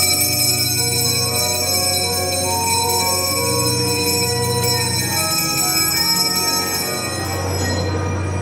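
Bells ringing steadily, with many high overtones, over organ chords. The bells stop shortly before the end.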